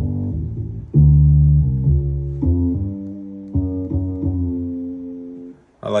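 Electric bass-app notes from the iFretless Bass app on an iPad: a slow line of single sustained low notes, the loudest entering about a second in and the rest following at roughly half-second to one-second steps before dying away near the end.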